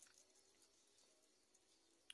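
Near silence: faint outdoor room tone with a few soft ticks.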